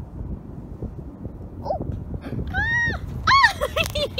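Low wind rumble on the microphone, then from about two and a half seconds in, a few short, high-pitched wordless vocal cries that rise and fall in pitch, the loudest near the end.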